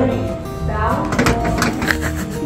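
Background music with acoustic guitar in a country style, with a voice talking over it.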